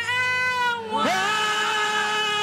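A woman singing long, sustained worship notes into a microphone. About halfway through, her voice slides up into a new held note.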